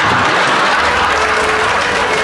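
Studio audience applauding, with faint music coming in over it after about a second.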